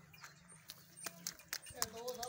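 Faint background with a few sharp light clicks, and a faint voice coming in near the end.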